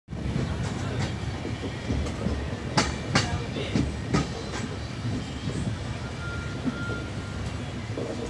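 Indian Railways passenger coaches running on the track, heard from a coach window: a steady rumble of wheels on rail, with sharp clacks over rail joints, two close together about three seconds in and another about a second later. Near the end a faint thin squeal sounds briefly as the train takes a curve.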